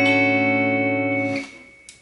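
Electric guitar ringing out a strummed D major 7 chord, barred at the fifth fret, with the notes sustaining steadily. The chord is muted about one and a half seconds in and followed by a single small click.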